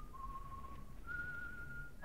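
Faint whistling of a slow tune: one long held note, then a second long note a little higher about a second in.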